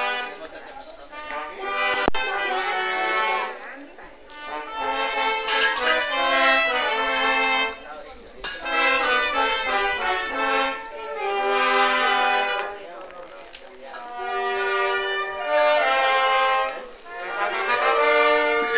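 A brass band playing a slow melody of held notes in phrases, with brief breaks between them.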